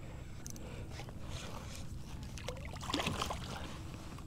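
Water sloshing quietly around a kayak as a hooked redfish is drawn alongside and grabbed by hand, with a brief splash about three seconds in.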